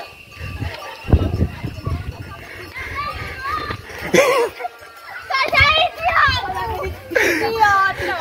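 Girls' excited, high-pitched voices and laughter, building from about three seconds in, with a loud cry about four seconds in. Early on there is low thumping from footsteps and handling as the camera is carried at a run.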